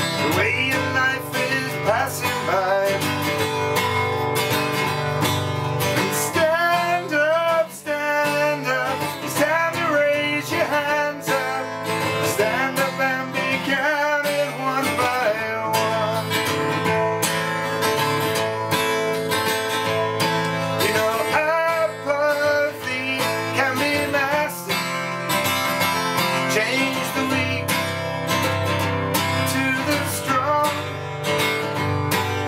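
A man singing in phrases over a steadily strummed cutaway acoustic guitar.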